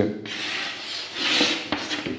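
Chalk scratching across a blackboard as letters are written and lines drawn in long rasping strokes, loudest about one and a half seconds in.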